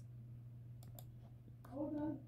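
A few faint clicks about a second in, from operating the computer, over a steady low hum, with a short voiced sound near the end.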